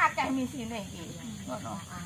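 Speech: a voice speaking short phrases, about half a second at the start and again near the end, over a steady high hiss.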